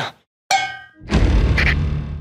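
Trailer sound effects: a sharp metallic clang about half a second in, ringing briefly, then a louder hit with a deep rumble just after a second.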